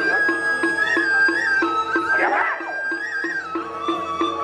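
Balinese gamelan playing dance accompaniment: a steady struck pulse about four times a second under a high held melody that steps up and down in pitch. About halfway through, a brief sliding, wavering sound rises above the music.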